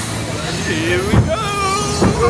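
Voices that rise and fall in pitch over the steady low rumble of a log flume boat moving through the ride, with a short thud about a second in.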